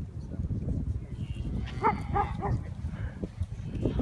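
Three or four short animal calls in quick succession near the middle, over a low steady rumble.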